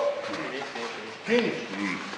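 Men's voices in a crowd: brief bursts of speech over a steady background murmur.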